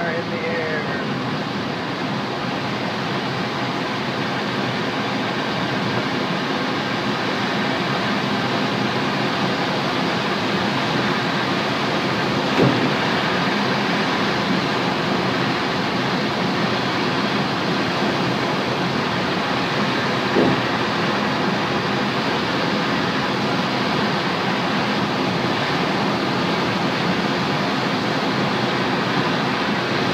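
Steady rushing airflow and airframe noise in a glider cockpit during the takeoff run and climb, building a little over the first few seconds and then holding even. Two faint knocks break through partway along.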